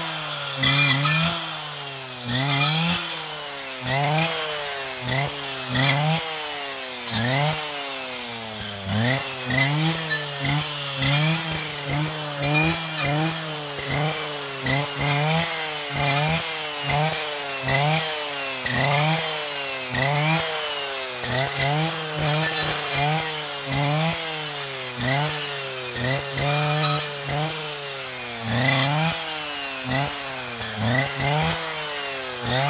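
Husqvarna 545RXT brushcutter's two-stroke engine, fitted with a saw blade, revving up and dropping back about once a second as the blade is worked through thin brushwood stems.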